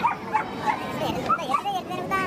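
Tibetan mastiff yipping and whining in a quick series of short, high yelps, about three a second, with people talking in the background.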